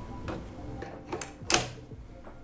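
V-mount battery being slid onto its mount plate on a camera rig: a couple of short clicks, the sharpest about one and a half seconds in as it seats.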